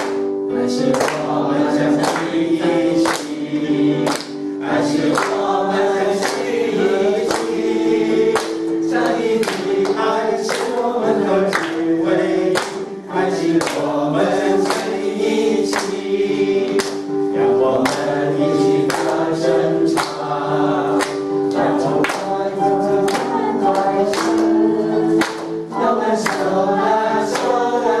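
A small group singing a Chinese-language Christian song in unison over backing music with a steady beat.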